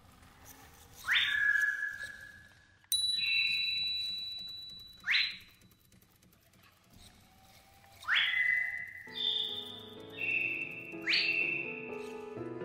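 A series of whistles. Four sweep sharply upward, at about one, five, eight and eleven seconds, and each settles into a held high note. Near three seconds another whistle holds a steady tone. Music with piano-like notes comes in under them about nine seconds in.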